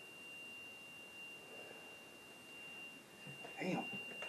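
A faint, steady, high-pitched electronic tone holding one pitch over quiet room hiss, with faint voices near the end.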